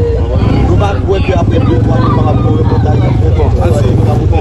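Men talking over background crowd chatter, with a steady low rumble underneath.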